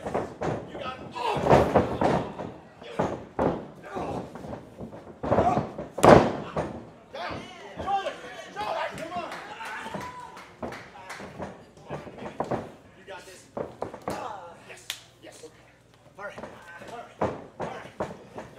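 Thuds and slams of wrestlers' bodies hitting the ring mat, irregular and scattered, the loudest one about six seconds in, among shouting voices from the ringside crowd.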